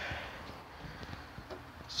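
Quiet background noise with a few faint clicks, and no engine running.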